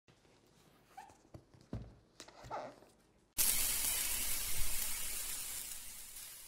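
A few faint knocks and two short squeaks, then about halfway through a sudden loud rushing hiss: the channel's logo-intro sound effect, which slowly fades away.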